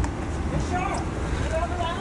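Faint voices talking in the background over a steady low outdoor rumble.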